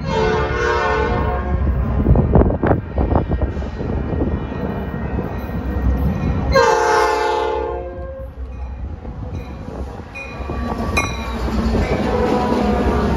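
Metra diesel commuter locomotive's air horn sounding two blasts as the train approaches, each just over a second long: one at the start and one about six and a half seconds in. A few sharp clicks fall between the blasts, and the locomotive's rumble and wheel noise grow as it draws alongside near the end.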